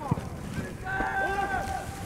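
Faint shouts and calls of football players on the pitch, one call held for about a second midway, over low outdoor background noise.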